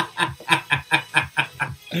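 A man laughing in a quick run of short, breathy chuckles, about five a second, dying away near the end.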